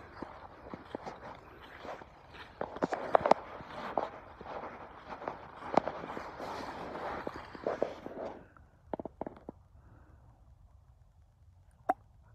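Footsteps through grass and fallen leaves, a rustling, crackling shuffle that stops about eight and a half seconds in, followed by a few faint clicks.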